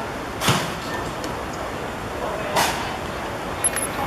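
Two short thumps of a football being kicked on a grass pitch, about half a second in and again about two and a half seconds in, over a steady outdoor background hiss.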